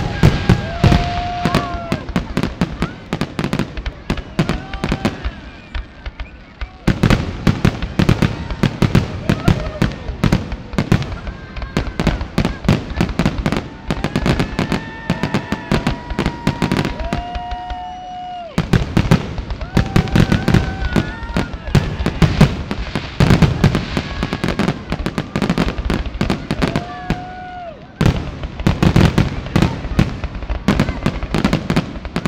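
Aerial fireworks display: a dense, continuous run of cracks, crackles and bangs that grows heavier in waves, about seven seconds in, again near twenty seconds, and near the end.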